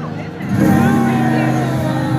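Live metal band heard from the crowd: after a brief lull, a held low guitar chord rings out about half a second in, with a voice over it.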